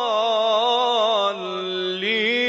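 A male Quran reciter's voice drawing out a long melodic held vowel with a slow waver in pitch. About a second and a half in, it steps down to a lower, softer sustained note.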